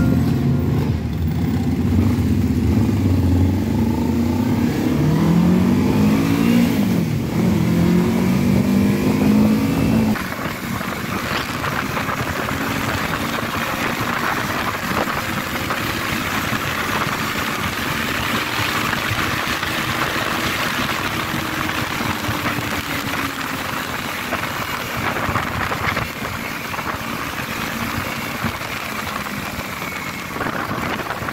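Motorcycle engine heard from the rider's own bike, its pitch rising and falling as it revs through the gears. About ten seconds in the sound changes abruptly to loud wind rushing over the microphone, with the engine humming steadily underneath at cruising speed.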